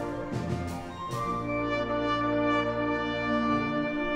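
Children's wind band playing, with brass and French horns prominent: a few short strokes in the first second, then one long chord held until near the end.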